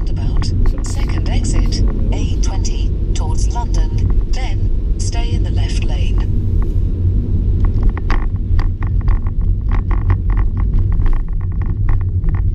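Steady low drone of a car's engine and tyres on wet tarmac, heard from inside the cabin, with an indistinct voice talking over it.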